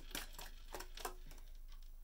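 Faint light taps and rustles of tarot cards being handled as a card is drawn from the deck, with a few small clicks in the first second.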